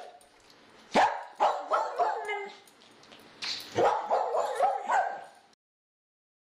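Short yips and whines, like a small dog's, in two clusters: a sharp click and a run of yelps about a second in, then another run about three and a half seconds in that stops abruptly shortly before the end.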